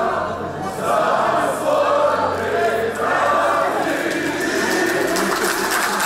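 A large group of people singing together, many voices at once, with some hand clapping.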